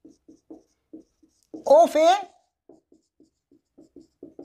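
Marker writing on a whiteboard: a quick run of short, separate strokes, several a second, as handwritten words are put on the board.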